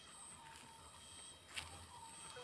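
Near silence: faint outdoor background with a single short click about one and a half seconds in.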